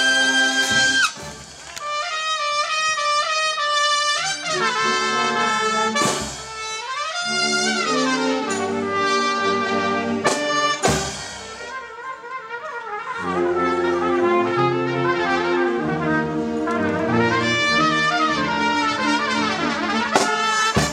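Solo trumpet playing over a wind band accompaniment: a held high note breaks off about a second in, then quick phrases run up and down the range while the band plays underneath, with a few sharp hits along the way.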